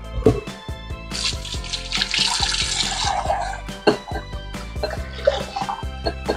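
Kitchen tap water running into a plastic bowl of rice being rinsed to wash off its starch, loudest for a couple of seconds in the middle, over background music.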